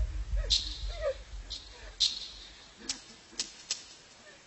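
A faint voice in the first second, then a run of sharp, irregularly spaced clicks or taps over a low rumble that fades away early.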